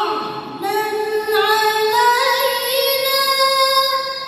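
A reciter chanting verses of the Qur'an in the melodic tilawah style, holding long drawn-out notes. There is a brief break for breath about half a second in, then the voice steps up in pitch about two seconds in with a wavering ornamented turn.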